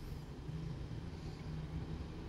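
A low, steady background hum with no distinct events.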